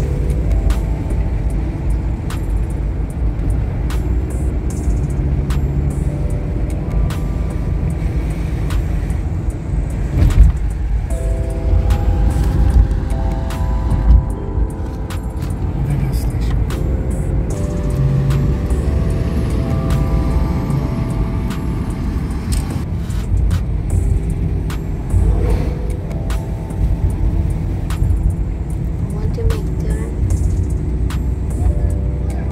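Low, steady road and engine rumble inside a moving car, with music playing over it in held melodic notes. Two louder thumps come about ten and fourteen seconds in.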